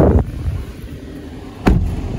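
A bump right at the start and a sharper, heavier thump about 1.7 s in, fitting the driver's door of a Mazda3 being shut from inside. Under both runs the steady low hum of the car's idling engine and cabin fan.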